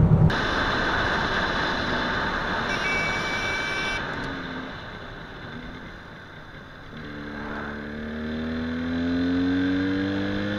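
A steady rush of wind and road noise for the first few seconds. Then a motorcycle engine is heard from the bike itself, its pitch rising steadily as it accelerates from about seven seconds in.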